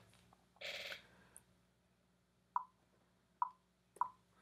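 Three faint computer mouse-button clicks, a little under a second apart, in the second half, with a short soft rush of noise about half a second in.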